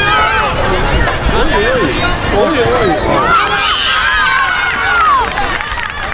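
Many children's high voices shouting and calling out at once during a youth football game, overlapping into a continuous din.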